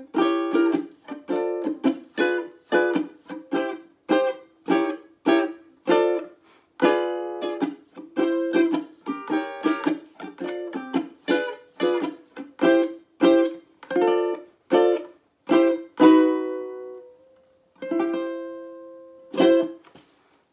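Cordoba UP-100 concert ukulele strummed in a steady rhythm, a few chords a second; in the last few seconds the strumming slows to single chords left to ring out.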